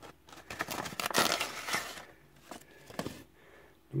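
Paper envelope rustling and crinkling as it is handled and opened, with a few light clicks, busiest in the first two seconds and then dying down.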